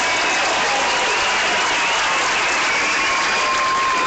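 Large crowd applauding steadily, with a few long high notes from voices or whistles held above the clapping.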